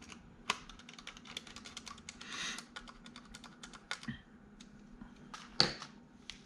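Small hardware being handled on a desk: a quick, irregular run of light clicks and taps, a short scrape about two seconds in, and one louder click near the end.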